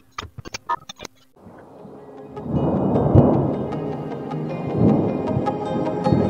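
A quick run of sharp clicks and crackles, then a rumble of thunder with rain swelling up from about a second and a half in, under slow ambient music.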